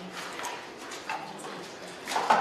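Faint, indistinct voices murmuring in a meeting room, with no clear words.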